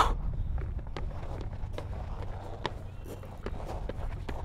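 Footsteps on a wooden playground balance beam: a string of light, irregular taps as a person steps along it, over a low steady rumble.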